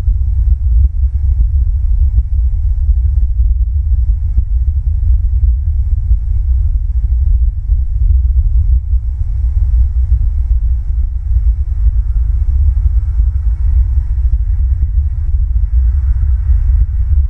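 Wind buffeting an outdoor nest camera's microphone: a loud, fluttering low rumble that never lets up, with a faint steady hum above it.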